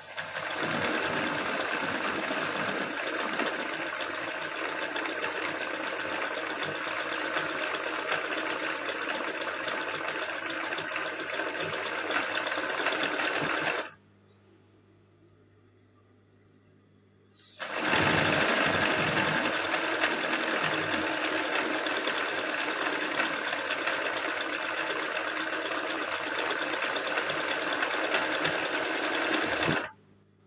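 Sewing machine stitching at a steady fast speed during free-motion embroidery, filling petal shapes with thread. It runs for about fourteen seconds, stops for a few seconds, then runs again until just before the end.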